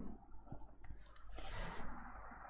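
Faint clicks and a short scratching stroke of a digital pen on a tablet as a line is drawn.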